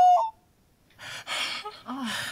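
A woman's high, drawn-out wail trailing off a quarter second in, then after a short silence, breathy gasping sobs from about a second in.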